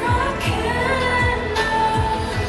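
Thai pop song performed live: a woman sings into a handheld microphone over a pop backing track with a deep bass beat.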